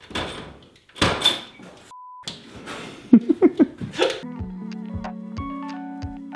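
A house door opening and a bicycle knocking against it as it is brought through, with a loud knock about a second in. A short beep and a few quick squeaks follow, then piano-like keyboard music with a steady beat starts a little past four seconds.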